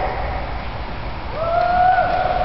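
A child's voice drawing out one high vowel that glides up and is then held steady, starting about a second and a half in, over the hum of a large room.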